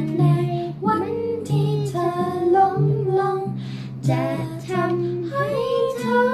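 A young girl singing a song in short phrases over instrumental accompaniment, ending on a long held note.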